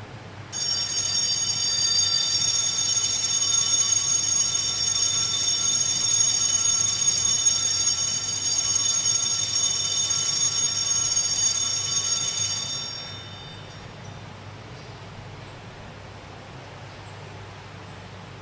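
Altar bells rung continuously for the elevation of the chalice just after the consecration, a steady high ringing that lasts about twelve seconds and then fades out.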